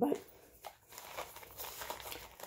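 Foil drink-mix sachet crinkling in the hand, a few faint, scattered rustles.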